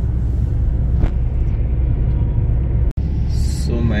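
Steady low rumble of road and engine noise heard from inside a moving car at highway speed. The sound drops out for an instant about three seconds in.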